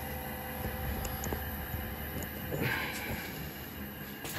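Anatol Solutions Mini conveyor dryer running just after being switched on: a steady machine hum from its fan and belt drive, with a brief hiss about two and a half seconds in.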